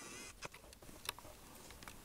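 Quiet room noise with a few faint, scattered clicks.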